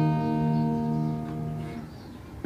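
Background music: a strummed acoustic guitar chord ringing out and fading away near the end.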